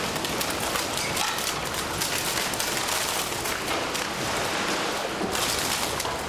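Low-speed crushing roller shredder breaking up bulky waste, a continuous dense crackling and crunching of plastic, paper and other refuse being torn and crushed.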